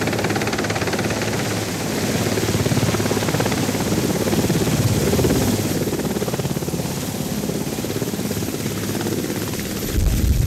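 Sikorsky VH-3D Sea King helicopter hovering low, with the fast, even chop of its main rotor over the steady run of its twin turbines.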